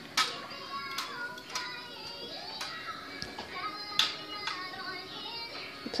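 Pink toy guitar playing a string of electronic notes as its buttons are pressed, each note starting sharply and ringing on briefly.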